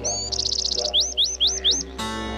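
A bird calling over plucked-string music: a fast high trill, then four quick rising whistled notes in the second half.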